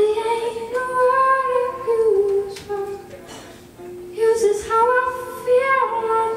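A woman's voice singing long held notes, in two phrases with a short break in the middle, over a strummed ukulele.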